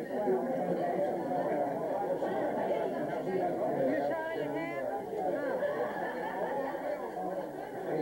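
Many people talking at once: overlapping conversation and chatter, with no single voice standing out.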